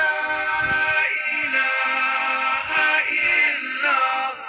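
Zikir playing from a recording: a single voice chanting a devotional melody in long held notes, sliding up in pitch near the end.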